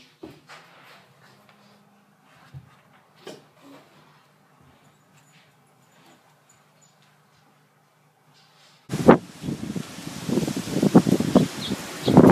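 Faint rustling and soft bumps of a person scooting down carpeted stairs on her seat, over a low steady hum. About nine seconds in, this gives way suddenly to loud, gusty wind buffeting the microphone.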